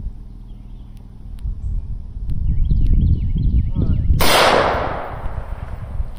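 A single rifle shot from a 5.56-chambered rifle firing .223 rounds, about four seconds in: a sharp crack followed by an echo that dies away over about a second.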